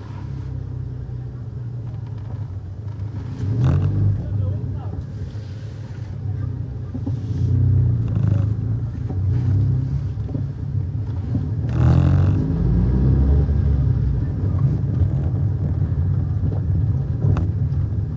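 Low, steady rumble of a car driving along a city street: engine and tyre noise, a little louder for a while from about twelve seconds in. A few short sounds stand out above it, around four, eight and twelve seconds in.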